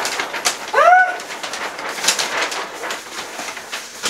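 Paper wrapping and heavy photo prints rustling and crinkling as they are handled. About a second in there is a short, voiced "ooh" that rises and falls.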